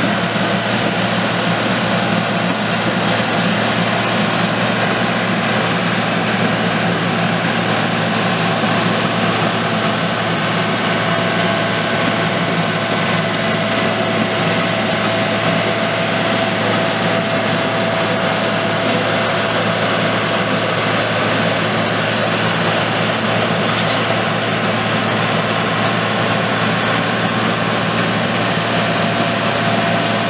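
Caterpillar D5G LGP crawler dozer's diesel engine running steadily as the machine spreads a layer of gravel drainage rock with its blade.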